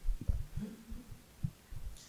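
Several soft, low thumps from a handheld microphone being handled and breathed on.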